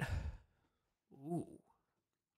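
A man sighing into a close microphone, a breathy exhale with a low rumble of breath on the mic, then a short thoughtful "ooh" about a second in.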